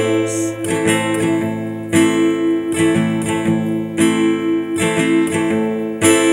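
Cutaway acoustic guitar strummed in a steady rhythm, a strong chord stroke about once a second with lighter strokes between, the chords ringing on.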